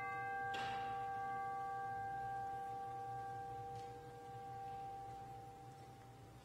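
A bell rings out after a single strike and slowly fades, its higher overtones dying away first and the lower tones lingering almost to the end. It is a memorial toll for a name just read.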